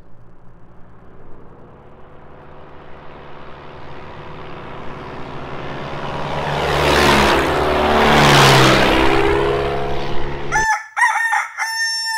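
Single-engine propeller bush plane making a low fly-by: the engine and propeller grow steadily louder as it approaches, peak as it passes close overhead, and drop in pitch as it goes by. The sound then cuts off abruptly, and a short pitched call like a rooster's crow follows near the end.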